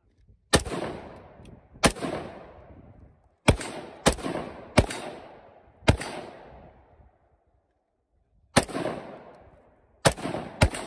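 AR-style rifle fired seven times in single shots at an uneven pace, each crack followed by a long echo that dies away over about a second. After a pause of a couple of seconds, one more shot comes near the end.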